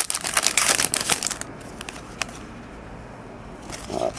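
Crinkling and rustling as a stack of baseball cards and their packaging is handled, a dense run of crackles for about a second and a half. Then a single click a little after two seconds, then quiet handling.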